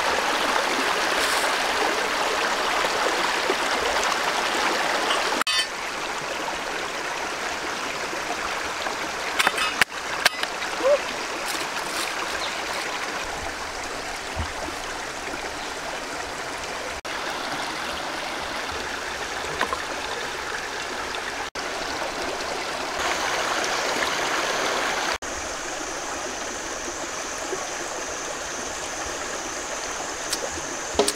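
Steady rushing of a stream running over rocks, its level jumping up and down at a few abrupt cuts. A few sharp knocks about ten seconds in, and a thin, steady high tone joins in the last quarter.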